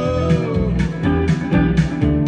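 Live electric guitar strummed in a steady rhythm over a low bass pulse, with a sung note held and bending before it trails off in the first half-second.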